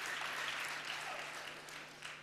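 Congregation applauding in a large hall, the clapping dying away toward the end.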